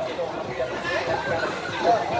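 Indistinct chatter of people talking, with no distinct non-speech sound.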